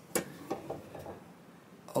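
Steel combination square set down against a wooden neck blank: one sharp click, then a few lighter ticks as it is shifted into position.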